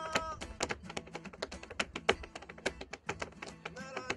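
Tap shoes striking a portable tap board in quick, irregular runs of sharp taps, over acoustic guitar accompaniment. A sung line trails off just after the start.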